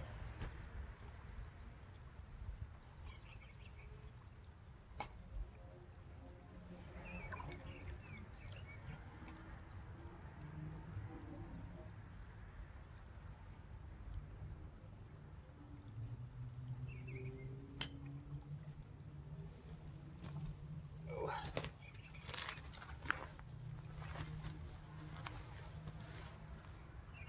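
Quiet creek-bank background with a few faint bird chirps and a steady low rumble. Near the end comes a quick cluster of sharp clicks and knocks, the loudest sounds, as a small fish is put into a clear plastic viewing box of water.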